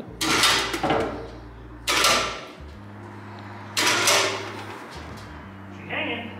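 Electric chain hoist motor humming in short runs as it lifts a heavy vertical bandsaw, stopping and starting several times. Three loud metal bangs about two seconds apart ring over it as the hanging machine shifts and knocks.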